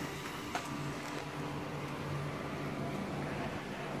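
A faint, steady low hum, with a light click about half a second in.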